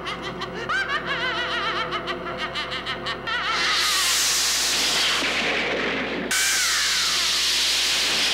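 Horror-film soundtrack: a high, wavering cackling laugh for about three seconds, then a loud hissing magic-blast sound effect. The hiss breaks off about six seconds in and starts again at once, with a falling whine over it.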